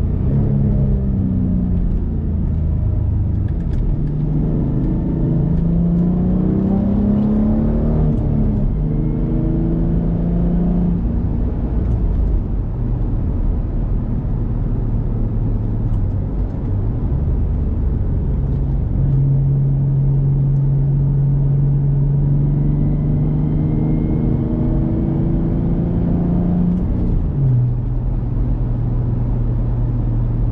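2006 Ford Mustang's 4.0 L V6, fitted with a cold air intake, headers and a Magnaflow exhaust, pulling under acceleration with its revs rising, then cruising at steady revs, with a sudden drop in engine pitch near the end. A steady low road rumble runs underneath.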